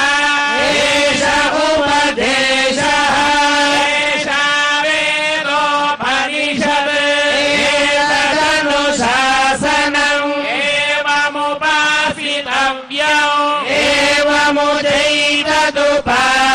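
A Hindu priest chanting mantras into a microphone in a continuous recitation on a near-steady pitch, broken by a few brief pauses.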